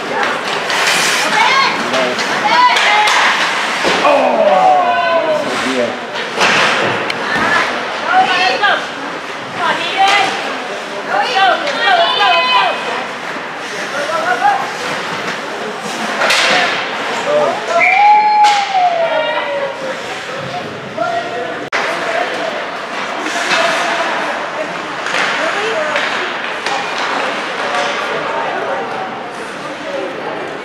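Ice hockey play echoing in a rink: sharp knocks of sticks and puck against the ice and boards, with indistinct shouting from players and onlookers.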